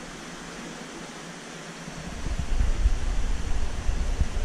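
Steady hiss of aquarium water circulation, a PVC return pipe jetting bubbly water into the tank. About halfway through, an irregular low rumble comes in and grows louder, like handling or wind noise on the microphone.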